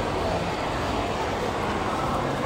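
Steady indoor shopping-mall background noise: an even, fairly loud hum and hubbub with no distinct events.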